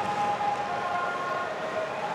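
Ice hockey arena crowd noise, a steady din with several sustained high tones held and shifting slightly in pitch over it.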